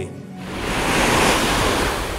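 A whoosh sound effect: a rushing noise that swells up over about a second and then eases off.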